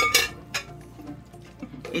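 Wooden spatula knocking and scraping against a metal frying pan while stirring cabbage, with two or three sharp knocks in the first half second, then quieter stirring, over faint background music.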